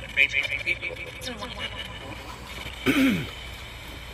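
Handheld spirit-box radio device sweeping through stations: choppy bursts of static and broken radio fragments. About three seconds in there is a louder burst with a voice-like sound that falls in pitch.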